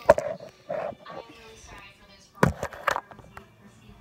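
Indistinct voices, with a few sharp knocks about two and a half to three seconds in.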